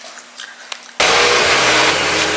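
A quiet room with a faint steady hum and a few light clicks. About a second in, this switches suddenly to a loud, steady rushing noise with a low hum.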